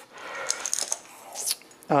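Knife cutting through a lemon on a wooden cutting board: faint, short slicing and scraping sounds, with a man's voice starting near the end.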